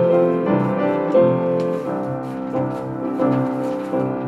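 Instrumental accompaniment to a children's song, led by piano, with chords changing in a steady rhythm and no singing over it.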